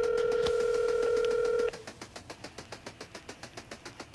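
Telephone ringback tone, heard as the call rings out at the other end: one steady ring about two seconds long that then stops.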